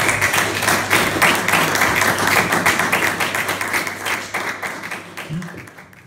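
Audience applauding, a dense spatter of clapping that fades out over the last two seconds.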